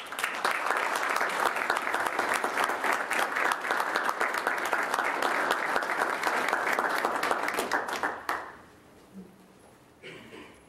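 Audience applauding, starting suddenly and dying away after about eight seconds.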